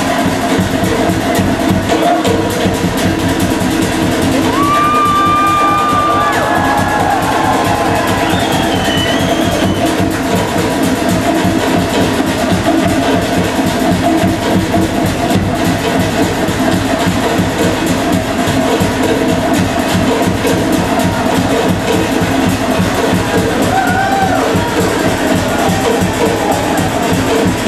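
Loud Polynesian show music with fast, steady drumming, accompanying a fire knife dance.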